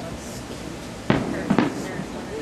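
Fireworks going off: one sharp bang about a second in, then two more in quick succession half a second later.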